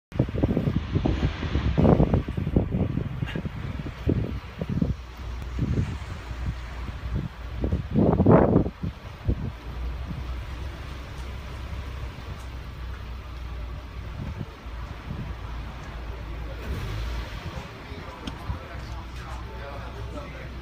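Mazda MX-5 (NB) four-cylinder engine rolling at low speed. Loud, irregular low rumbles and thumps fill the first half, then it settles to a steady low drone.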